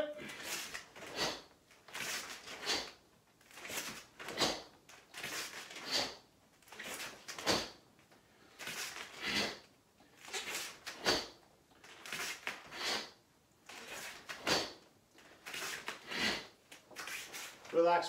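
A karateka stepping in and back and punching at his own pace: a short rush of sound with each move, roughly one every second, from the gi snapping, sharp breaths and bare feet on the mat.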